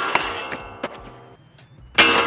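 Mountainboard 50-50 grinding along a waxed steel flat bar: the bar rings with a metallic tone that slowly fades, with a few light knocks as the trucks slide. Near the end comes a second loud hit as the board reaches the end of the rail.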